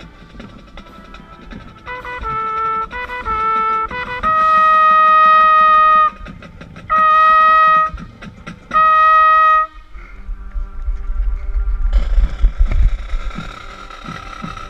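Trumpet played right at the microphone in a marching band show: a few short notes, then three loud held notes of the same pitch, each one to two seconds long. The band answers softly with a low held note, then comes in loud with drum hits near the end.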